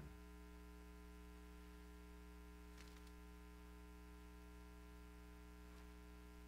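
Near silence: a steady electrical mains hum with a buzz of many even overtones, and two faint, brief puffs of sound about three seconds apart.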